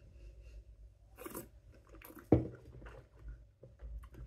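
Soft mouth sounds of sipping and tasting perry from a glass: a short rushing breath about a second in, then small lip and tongue clicks.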